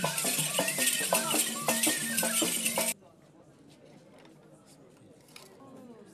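Traditional dance music with voices and shaken rattles, cut off abruptly about halfway through, leaving faint background chatter.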